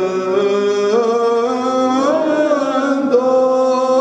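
Byzantine chant of a Greek Orthodox service: a voice holding long notes and ornamenting them with slides and turns in a melismatic line, sung continuously.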